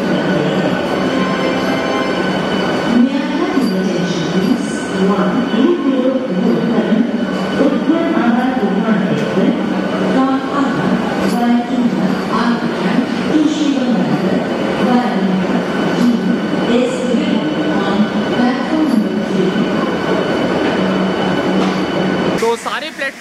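Vande Bharat Express electric multiple-unit train rolling along the platform as it arrives: continuous rolling noise with a steady electric hum, and voices in the background.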